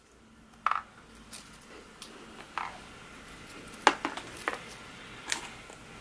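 A few light, scattered taps and clicks of small styrofoam balls being set down on cardboard candy boxes and plastic-wrapped candy in a basket.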